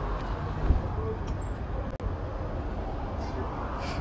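Steady low rumble of traffic and urban background noise, with a brief dropout about two seconds in.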